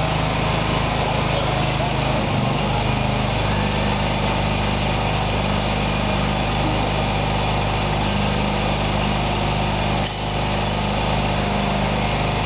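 LP-gas engine of a hydraulic mold change cart running steadily as the cart drives, its note shifting about three and a half seconds in and dipping briefly near ten seconds.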